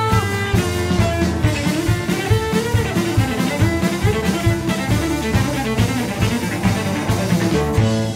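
Cello-led country-rock band playing an instrumental passage: a bowed cello carries a sliding melody over bass, guitar and a steady drum beat.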